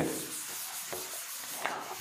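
A sponge duster wiping chalk off a chalkboard: a steady rubbing hiss as it sweeps across the board.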